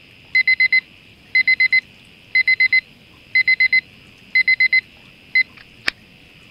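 Electronic alarm beeping in the classic digital-alarm-clock pattern: four quick, high beeps about once a second, repeated five times. A single last beep follows, then a sharp click near the end as the alarm stops.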